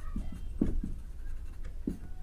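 A marker writing on a whiteboard: a series of short, faint strokes as letters are written.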